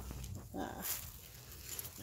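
Footsteps and rustling in dry leaf litter, with a brief rustle about a second in.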